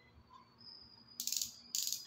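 Two short rattling bursts a little over a second in, made as a small makeup bottle is handled in the fingers.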